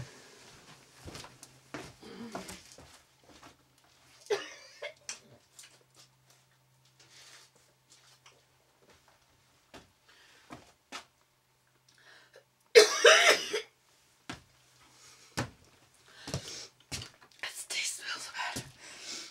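A woman's harsh cough about thirteen seconds in, the loudest sound. Around it come scattered light knocks and clicks of things being handled, over a faint steady hum.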